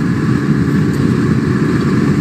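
Steady road and engine noise inside a car's cabin while it is driven at freeway speed.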